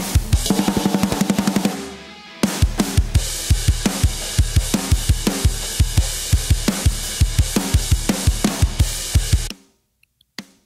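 A rock drum kit played back soloed from a mix: kick drum at about four strikes a second under snare and cymbals. It breaks off briefly about two seconds in, picks up again, and stops just before the end. It runs through an oeksound SPIFF transient processor on the drum bus, set to cut, which rounds off the snare's attack.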